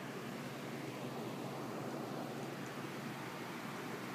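Steady low background hiss with no distinct events: room tone.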